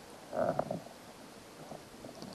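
Shallow lake water sloshing and gurgling briefly around a hand releasing a fish, about half a second in.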